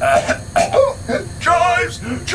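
A man's voice coughing and clearing his throat in short bursts, ending in a wavering, drawn-out groan.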